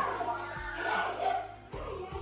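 Background music: voices singing over a steady bass line.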